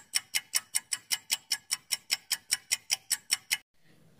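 Clock-tick sound effect of a quiz countdown timer, sharp even ticks about five a second, stopping just before the end.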